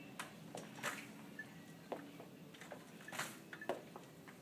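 Faint, irregular taps and scuffs of a person walking slowly with a two-wheeled folding walker on a hard floor.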